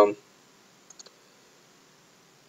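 Two or three faint computer mouse clicks about a second in, after the end of a spoken word.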